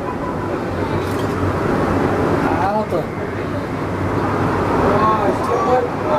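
Penang Hill funicular railway car running steadily uphill on its rails: a continuous rumble with a low hum, entering a tunnel. Passengers' voices are mixed in.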